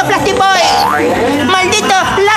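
Wordless vocal sounds from the performers, with a short sound that rises steeply in pitch a little over half a second in, over a steady low hum.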